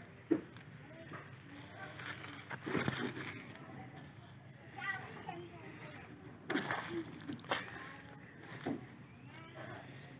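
Footsteps and the brushing of corn leaves as someone walks through the plants: a handful of separate rustles and knocks spread out over the seconds, with faint voices in the distance.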